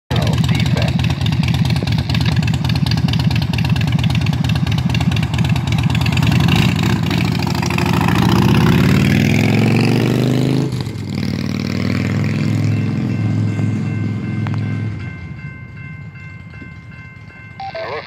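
Cruiser motorcycle engine running loudly, revving up as it pulls away, with a drop in pitch about ten and a half seconds in, then fading out over the next few seconds.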